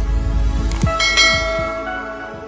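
Intro sound effects: a few short falling low thuds and clicks, then a bell-like chime about a second in that rings on and fades away.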